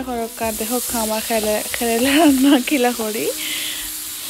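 Sliced bitter gourd sizzling as it is stir-fried in hot oil in a pan, a steady frying hiss throughout. A woman's voice runs over it and stops a little after three seconds in.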